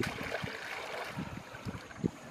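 Water splashing and dripping as a clump of waterweed is pulled up out of shallow muddy water, sudden at first and trailing off after about a second, followed by a few soft low thumps.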